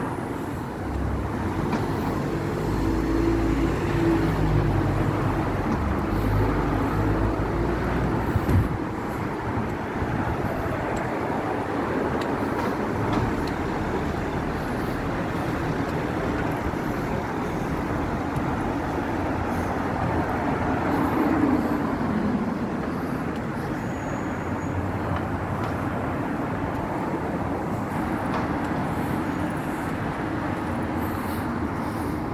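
City road traffic passing on wet tarmac, a steady tyre hiss and engine hum. A heavy vehicle rumbles past in the first several seconds, with a single sharp knock about eight seconds in, and another vehicle passes about two-thirds of the way through, its pitch falling as it goes by.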